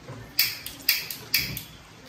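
Gas hob's spark igniter clicking three times, about half a second apart, as the burner is lit under a pan of water.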